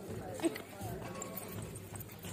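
Faint voices over outdoor background noise, with one short louder sound about half a second in.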